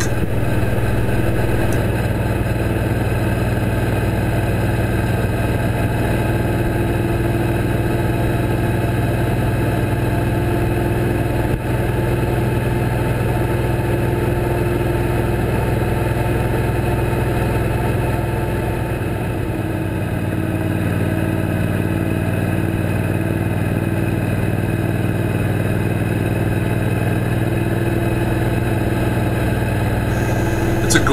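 Suzuki Boulevard C90T's V-twin engine running steadily at highway cruising speed, with a constant rush of wind noise; the engine note eases briefly a little past the middle.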